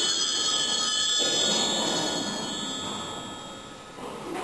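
Hand-held altar bells rung at the elevation of the chalice during the consecration: a cluster of high, bright ringing tones fading away over a few seconds.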